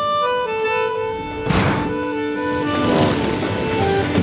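Film-score music with held accordion notes; about a second and a half in, a sudden loud rush of noise breaks in over it, and near three seconds a cluster of tones slides downward as the music goes on.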